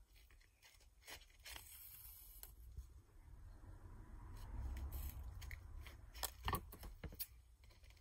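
Faint rustling of grosgrain ribbon and thread being handled while small knots are tied at the gathered centre of a bow, with a few light clicks near the end.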